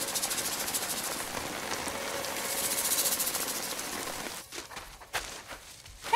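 Steady rain pelting a small tent shelter, with a fast fine rattle in the hiss that swells around the middle; it cuts off about four seconds in, leaving a couple of faint knocks.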